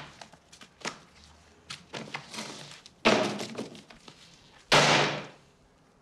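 Scattered footstep-like knocks on a hard floor, then a loud thud about three seconds in and a door slammed shut near the end, the loudest sound.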